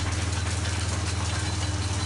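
A John Deere tractor's engine running steadily, heard from inside the cab as an even low hum.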